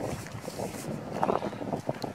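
Wind buffeting the microphone, with a few footsteps on paving stones about a second in and near the end.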